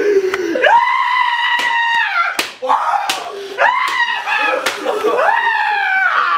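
A person screaming three long, high-pitched screams, with sharp slaps between them.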